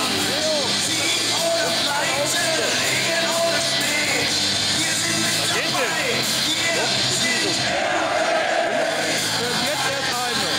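Music played over a stadium PA, with a large crowd of football fans singing and shouting along.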